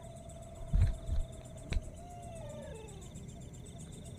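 A long, thin howl-like call holds one pitch, then wavers and slides downward about two seconds in, over a faint steady trill of night insects. A couple of low thumps and a click in the first two seconds.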